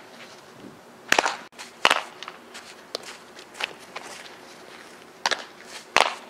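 Sharp cracks of a softball fielding drill: a bat hitting a softball and the ball smacking into leather gloves. Two loud ones come close together about a second in, and another comes near the end.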